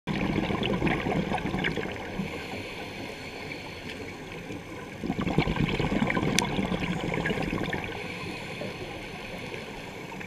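Scuba diver's exhaled bubbles rushing and gurgling past an underwater camera housing, two exhalations a few seconds apart with a quieter inhale between. Faint crackling clicks run underneath.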